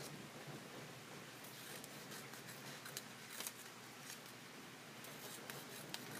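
Scissors snipping through folded silver paper, a few faint separate cuts, over a steady hiss of heavy rain outside.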